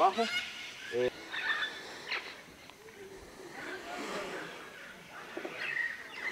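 Faint, indistinct talking from people in the background, with a few short, high rising chirps near the start.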